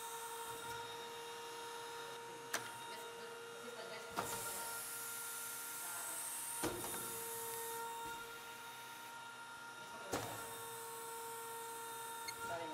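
Automatic coil-taping machine running while it wraps insulation tape onto high-voltage coil bars. It makes a steady whine, with a few sharp clicks and a high hiss that comes and goes.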